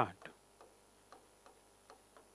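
Faint, light taps and clicks of a pen on a writing board as a word is written, about two a second.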